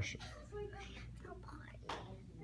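Faint, murmured voices in the background, with one sharp click just before the end.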